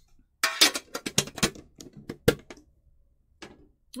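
Quick run of light clicks and knocks as the empty Pokémon tin's cardboard insert and packaging are handled and set aside, then one or two more clicks near the end.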